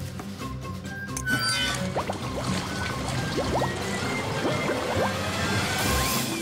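Cartoon background music under a water sound effect: water gurgling and rushing at the clogged drain of a garden fountain, growing louder from about a second in.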